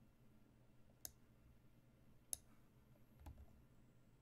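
Three sharp computer-mouse clicks, the second the loudest, as a chess move is made on screen; otherwise faint room tone.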